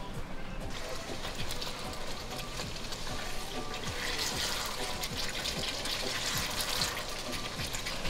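Thick chicken curry sizzling and bubbling in a pot as it is stirred with a spatula, a steady crackle.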